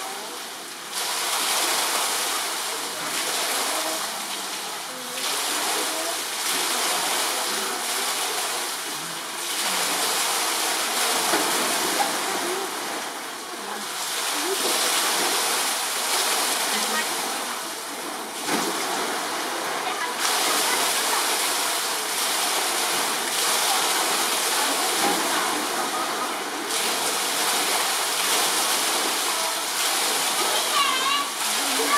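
Steady rush of running water in a zoo polar bear enclosure, swelling and easing every few seconds, with a faint murmur of onlookers' voices underneath.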